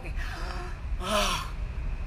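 A woman's breathy intake, then about a second in a louder, breathy sigh with a voice falling in pitch: a sigh of release, acted out to show letting off steam.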